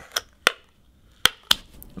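Black adhesive tape being peeled off the inside of a smartphone frame, letting go in about five sharp ticks and snaps.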